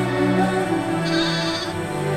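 A sheep bleat sound effect around the middle, over slow, sustained background music.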